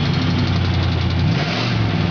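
Oldsmobile 350 V8 with a glasspack muffler idling steadily. The engine has a known exhaust manifold leak on the left side.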